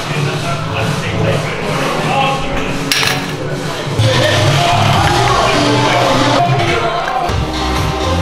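Background music played loudly, with a single sharp click about three seconds in.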